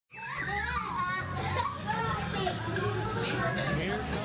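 A group of young children calling and chattering, many voices overlapping, over a low rumble.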